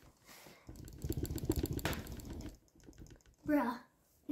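A rapid run of light clicks or taps for about two seconds, starting just under a second in, followed by a brief bit of a child's voice near the end.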